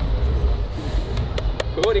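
Men talking over a steady low rumble, with a few sharp clicks or taps in the second half.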